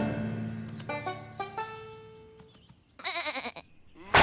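Background music dying away with a few last notes, then a short, wavering sheep bleat about three seconds in.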